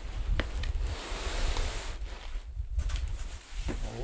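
Large cardboard shipping box holding a heavy subwoofer being tipped over and shifted: cardboard rustling and scraping for the first two seconds or so, then a few light knocks and clicks as the box is set down.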